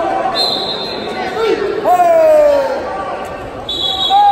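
Wrestling shoes squeaking on the vinyl mat as the wrestlers scramble. There is a high squeak near the start, a longer squeak that falls in pitch about two seconds in, and another high squeak near the end.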